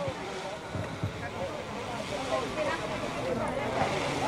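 Faint, indistinct voices of several people talking away from the microphone, over a steady outdoor noise haze.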